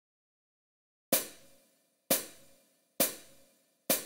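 Four short percussive count-in ticks from an arranger keyboard's rhythm section, evenly spaced about a second apart after a second of silence, counting in the song before the backing track starts.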